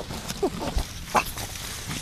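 Yorkshire terrier nosing through dense leafy plants while hunting, with a few short sniffs and snuffles among the rustle of leaves.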